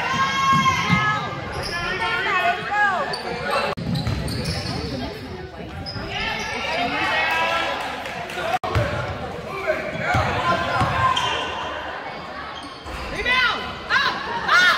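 Basketball game sounds in an echoing gym: the ball bouncing on the hardwood, sneakers squeaking in short high chirps, and players and spectators calling out indistinctly.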